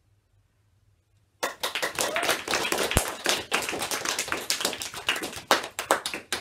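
A group of people clapping, starting suddenly about a second and a half in and continuing with dense, irregular claps.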